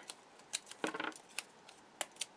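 A strip of washi tape being handled between the fingers and pressed onto card: a few faint, sharp ticks and crinkles.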